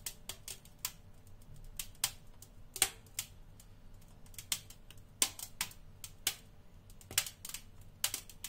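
Dry ice under poured water, crackling with sharp irregular clicks and pops, about two a second. The loudest pop comes near the three-second mark.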